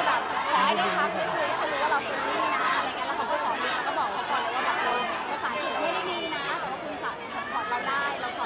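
Speech: a woman talking in Thai, with chatter from a surrounding crowd.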